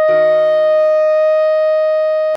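A clarinet voice holds one long, steady note: written F5, which sounds as concert E-flat. Under it the accompaniment sustains a D-sharp minor chord.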